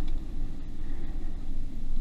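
Wind on the camera's microphone: a steady low rumble.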